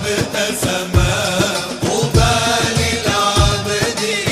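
Male voices singing an Arabic nasheed over a low, regular beat.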